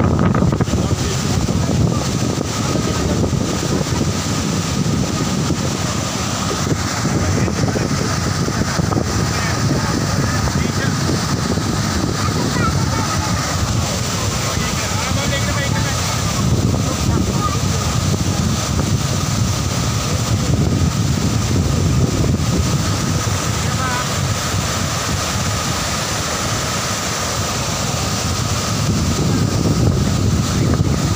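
Floodwater rushing through the open gates of a dam spillway, a loud, steady roar of churning whitewater, with wind on the microphone.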